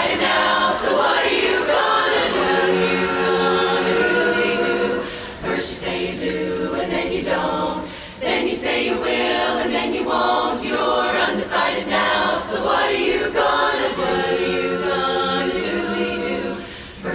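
A women's barbershop chorus singing a cappella in close harmony, phrase after phrase with short breaths between.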